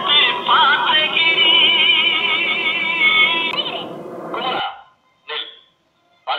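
A Tamil song with a sung melody over backing music, which cuts off about three-quarters of the way through; a brief burst of sound follows, then silence.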